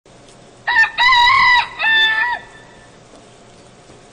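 A rooster crowing once, cock-a-doodle-doo: a short note, a long held note, then a last note that drops away, about two seconds in all.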